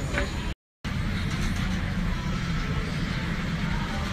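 Steady low rumble of a Boeing 787's cabin, its air system running while passengers board. The sound cuts out for a moment about half a second in, where the footage is cut.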